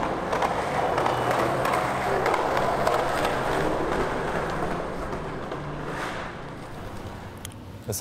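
Skateboard wheels rolling along a concrete sidewalk as a skater cruises past, the rolling noise fullest in the middle and fading away over the last couple of seconds.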